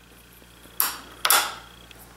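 Two short handling noises, about half a second apart, from a small plywood box-jointed puzzle box as its locking pin is put back in.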